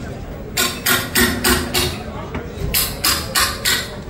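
Two quick runs of four sharp, evenly spaced knocks, about three a second, with a faint ringing tone under them.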